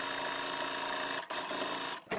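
Baby Lock Sofia 2 sewing machine stitching steadily through thick knit layers, stopping briefly about halfway through and again at the end.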